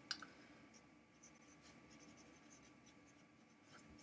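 Very faint strokes of a felt-tip marker writing on paper.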